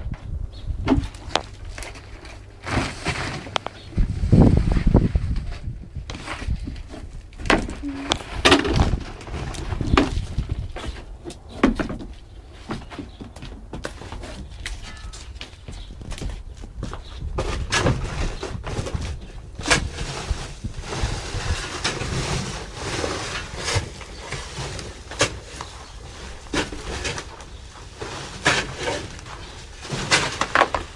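Irregular knocks, scrapes and rustling as garden soil is stirred and handled in a large woven plastic bulk bag.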